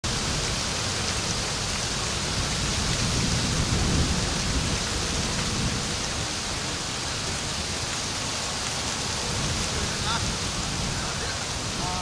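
Wind buffeting the microphone: a steady rushing hiss over a gusting low rumble, strongest about three to four seconds in. Faint distant voices near the end.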